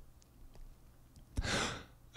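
A narrator's audible breath drawn in, about half a second long, near the end of a short quiet pause between spoken sentences.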